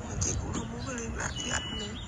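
A man crying, his voice breaking into wavering, whimpering sobs.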